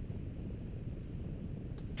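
Steady low background rumble with no distinct events: outdoor ambient noise at the launch viewing site.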